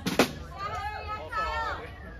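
A single sharp drum hit on the drum kit, right after the drummer is introduced, followed by faint voices.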